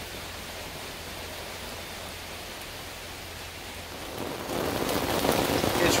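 Steady rain falling on a wooden deck, growing louder about four seconds in.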